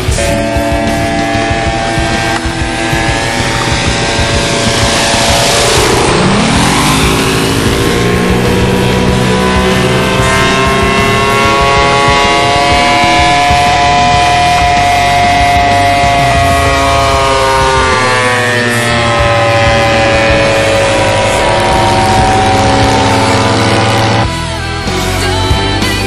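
Engine of a radio-controlled scale P-47D Thunderbolt model in flight. Its pitch dips sharply and climbs back about six seconds in, then holds fairly steady with slow rises and falls as the plane flies around.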